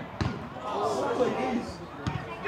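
A football kicked with a sharp thud just after the start, then players shouting on the pitch.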